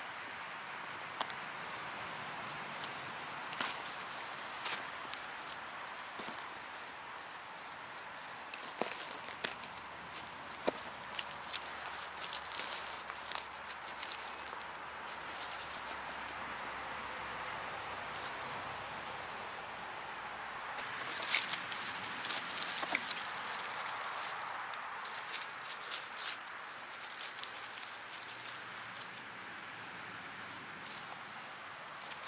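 Footsteps and hand movements in dry leaf litter and twigs: rustling and crackling that comes in clusters of sharp clicks, loudest a little after twenty seconds in, over a steady faint hiss.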